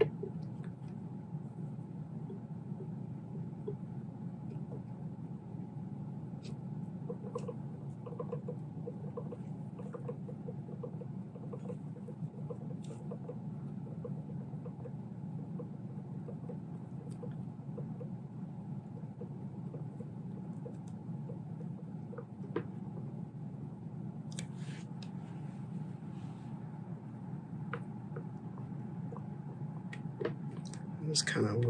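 Faint, scattered clicks and scrapes of a steel air-rifle barrel wrapped in a thin brass shim being worked into the rifle's action, over a steady low room hum; the handling noises come more often near the end.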